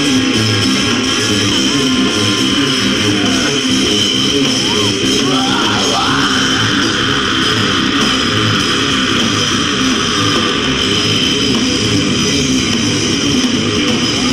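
Live rock band playing an instrumental passage with loud electric guitars and drums.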